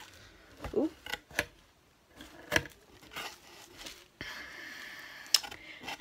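Paper and cardboard handling as a paper-wrapped, twine-tied book is drawn out of a cardboard shipping box: scattered sharp rustles and taps, then a steady rustle for about two seconds near the end.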